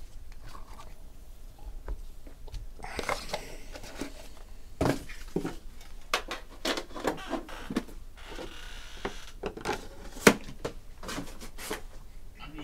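Trading cards and a small cardboard card box handled on a tabletop: scattered clicks and taps as the box and cards are set down, with a sharp tap about ten seconds in and two brief rustles of packaging.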